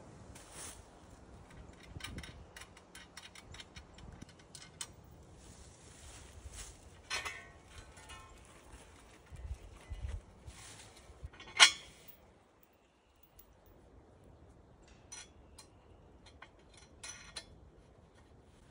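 Scattered metallic clicks and clinks from a Tree Lounge climbing tree stand's metal frame being handled and taken off a tree trunk, with one loud clank a little past the middle, amid light rustling.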